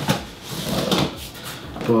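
Knife blade slitting the packing tape along the seam of a cardboard box, in a couple of rasping strokes of blade on tape and cardboard.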